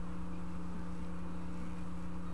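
Steady background hum with one constant tone and a fast, even throb beneath it; nothing else stands out.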